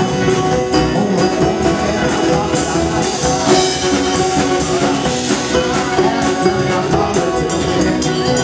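Live string band playing together: fiddle, banjo, strummed acoustic guitar and drum kit keeping a quick, steady beat, with no clear singing.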